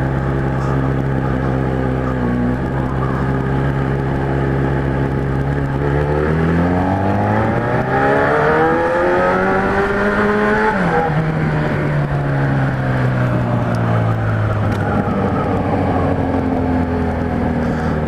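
Kawasaki Z1000 inline-four motorcycle engine through an aftermarket 4-into-1 exhaust, heard from the rider's seat while riding: a steady note, then rising as the throttle opens about six seconds in, dropping sharply at about eleven seconds and winding down slowly as the bike slows.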